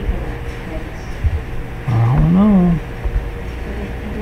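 A short wordless vocal sound, a hum or drawn-out "ooh", about two seconds in: one note under a second long that rises and then falls in pitch. It sits over a steady low background rumble with a few soft knocks.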